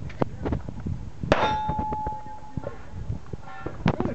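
Pistol shots on a practical-shooting stage, with a steel target ringing after a hit about a second in: a sharp crack followed by a clear metallic ring that dies away after about a second.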